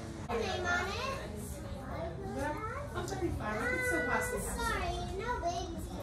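Children's voices: kids chattering and calling out at play, with no clear words, one voice drawn out higher for a moment about four seconds in.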